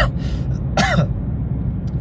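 A man's two brief non-word vocal sounds, like clearing his throat or a hesitant 'uh', one at the start and one about a second in, over a steady low rumble.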